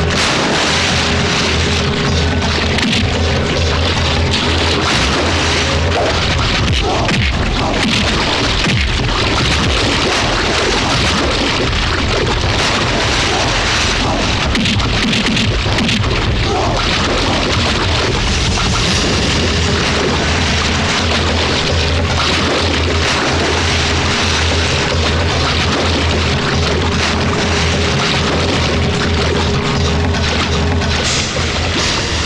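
Loud, dense action-film background score with a steady low drone and many heavy booming hits, with fight impact sound effects mixed in.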